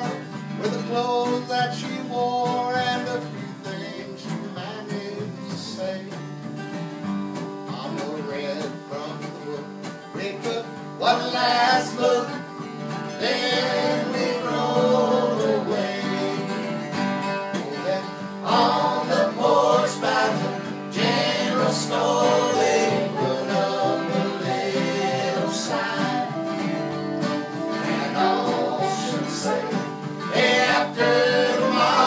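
A small acoustic country band playing live in a room: strummed acoustic guitars and upright bass under melody lines from a fiddle and a soprano saxophone.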